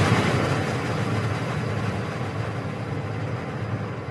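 Logo-intro sound effect: a long noisy whoosh with no clear pitch that slowly fades away after the intro's opening hits.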